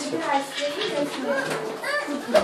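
Young children's voices chattering as they play.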